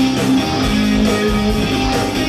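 Live rock music played on stage, led by a guitar, with held notes that step from one pitch to the next every half second or so.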